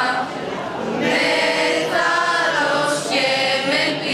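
A group of young voices, boys and girls together, singing a cappella in unison, with long held notes that slide from pitch to pitch and a brief lull in the first second.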